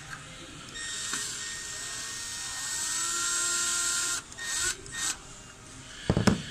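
Cordless drill-driver spinning a T20 Torx screw out of an ABS module: a steady motor whine whose pitch rises about two and a half seconds in, stopping a little after four seconds in, followed by two short bursts.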